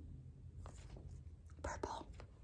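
Quiet room with a few faint, soft breathy sounds and a slightly louder brief one near the end.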